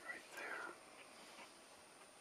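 A person whispering a short phrase near the start, quiet against a faint steady hiss.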